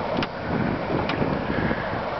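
Wind on the microphone over choppy sea, with water lapping against a small wooden boat's hull, steady and unpitched, with a couple of short sharp splashes about a quarter-second and about a second in.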